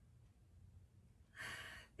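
Near silence with a faint low room hum, then a woman's audible breath lasting about half a second near the end.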